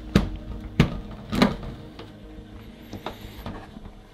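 Latches of a hard plastic carrying case snapping open, three sharp clicks within the first second and a half, then a couple of small ticks as the lid is lifted.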